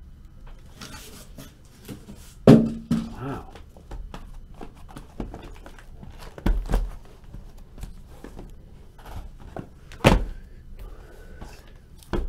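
Shrink-wrapped cardboard card boxes being lifted out of a shipping case and set down on a tabletop: three dull thuds, the loudest about two and a half seconds in, the others about six and a half and ten seconds in, with light handling clicks and rustles between.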